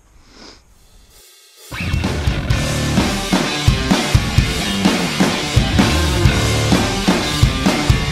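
Rock music with a steady drum kit beat, coming in abruptly about two seconds in after a short quiet stretch of faint outdoor background.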